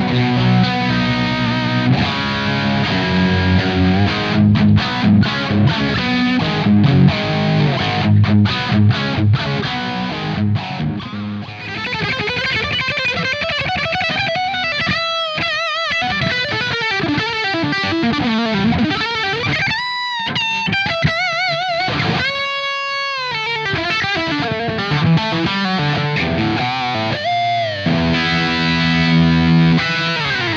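Overdriven electric guitar through a J. Rockett HRM v2 overdrive pedal set for lead: gain high, treble raised, low mids cut and level pushed up. A Stratocaster first plays low, chunky riffs with abrupt stops. About twelve seconds in, a Les Paul's humbucker takes over with a singing lead solo of high notes, string bends and wide vibrato.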